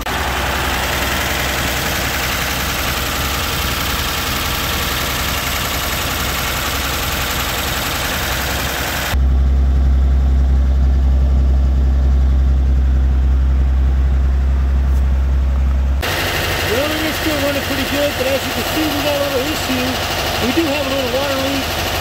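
Chevrolet 235 inline-six idling steadily, with a rattle from its valve cover, which is missing its bolts. About nine seconds in the sound turns to a deep, steady exhaust rumble with little treble for about seven seconds, then returns to the fuller engine-bay sound.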